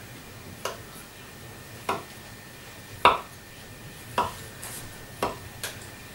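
Kitchen knife slicing through a log of butter-cookie dough, the blade knocking on the wooden tabletop with each cut, about six knocks roughly a second apart.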